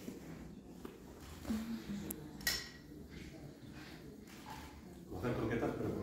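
Utensils and glass mixing bowls handled during food preparation, with a few light knocks and one sharp clink about two and a half seconds in. Voices murmur faintly behind, growing louder near the end.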